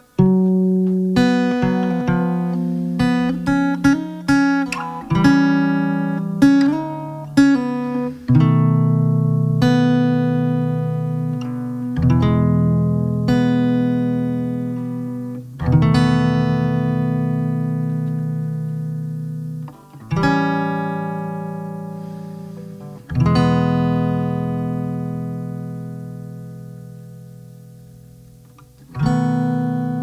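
Solo acoustic guitar: quickly picked notes and chords for the first several seconds, then slower strummed chords, each left to ring out and fade for several seconds.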